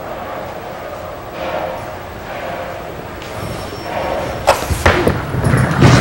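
Five-pin bowling ball released onto the lane: it lands with a sharp thud about four and a half seconds in, then rolls down the lane with a low rumble that grows louder, under the steady background of the bowling hall.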